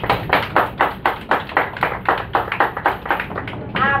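Hand clapping in a quick, even rhythm, about five claps a second, stopping just before the end: a short round of applause.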